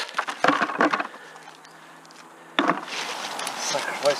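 Stones being dropped into a bucket: a run of knocks and clatters in the first second, a short pause, then more clattering from about two and a half seconds in.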